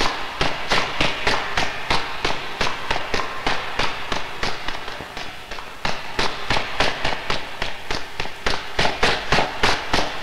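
Running footsteps on stairs, a fast string of sharp steps at about four a second, a little softer around the middle.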